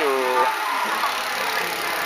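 A man speaking Thai briefly, then a steady rushing background of road noise from riding on a highway among a group of cyclists.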